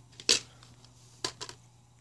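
Plastic DVD case being handled and snapped open: one sharp click shortly after the start, then a few lighter clicks about a second later.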